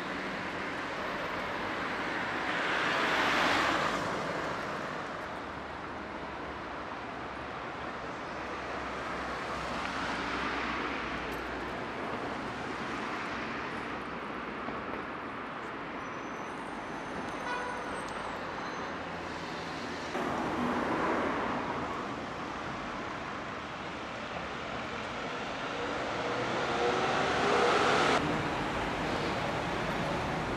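Road traffic: a steady street rumble with four vehicles passing close by, each swelling and fading away.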